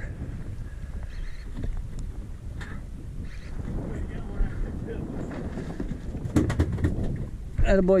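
Wind rumbling on the microphone over water sloshing against a small fiberglass boat's hull, with a short run of clicks a little after six seconds in.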